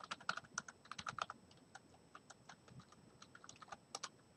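Typing on a computer keyboard: a quick run of faint key clicks, thickest in the first second and a half, then sparser, with one sharper click near the end.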